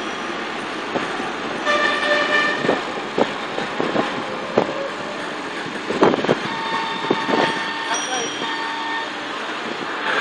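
Busy city street traffic heard from a moving vehicle: steady road and engine noise with several vehicle horns honking, one around two seconds in and more towards the end, and a few sharp knocks, the loudest about six seconds in.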